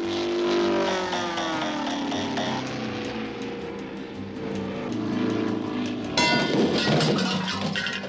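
Cartoon music score with long sliding, falling notes. About six seconds in, a sudden loud crash sound effect lasts nearly two seconds as the bird smashes through a wooden fence.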